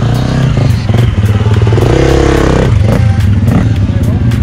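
Dirt bike engine running near idle, with a brief rev up and back down about halfway through.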